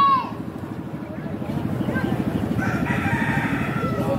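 A rooster crowing, one long call in the second half, over an engine running with a rapid, even low throb.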